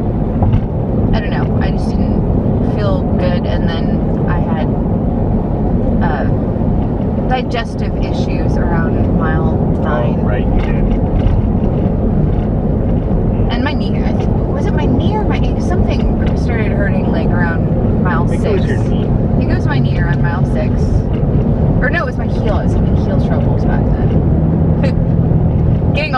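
Steady low road and engine rumble inside a moving car, with bits of conversation over it.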